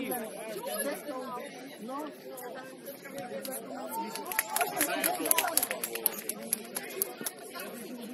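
Players' voices calling and chattering across a football pitch, with a few sharp knocks about halfway through.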